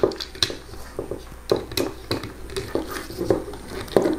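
Irregular light clicks and taps of a screwdriver and a small screw being worked into a 3D-printer extruder mount.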